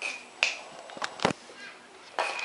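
Small hard plastic toy blocks knocking on a laminate floor: about four sharp clacks in two seconds, each with a short bright ring.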